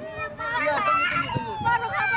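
Raised, high-pitched voices of women and children in a crowd, calling out without a pause.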